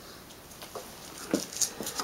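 Faint hand-handling noise: a few light clicks and rustles in the second second as the tester hose fitting is screwed into the spark plug hole and let go.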